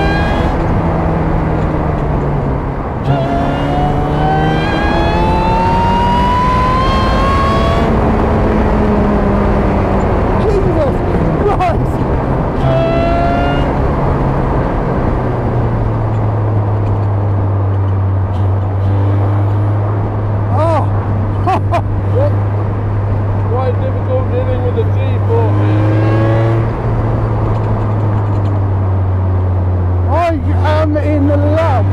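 Supercharged 2.0-litre Honda K20 four-cylinder of an Ariel Atom pulling up through the gears, its pitch rising with a gear change about three seconds in and another pull to about eight seconds. From about halfway it settles into a steady low drone at cruising speed.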